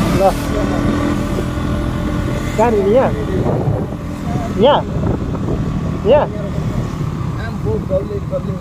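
Motorcycle engine running at low road speed, heard as a steady low rumble mixed with wind noise on the rider's camera microphone. A person's voice breaks in briefly about four times.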